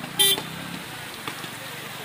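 A single short, loud horn beep about a fifth of a second in, with murmuring voices of people in the background.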